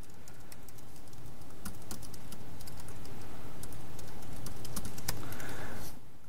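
Typing on a MacBook Pro laptop keyboard: irregular key clicks as a terminal command is entered, over a room hiss that slowly grows louder.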